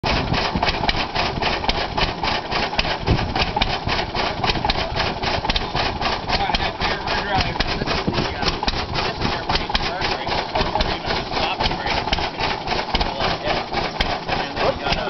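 Hart-Parr tractor engine running steadily with a rapid, even firing beat.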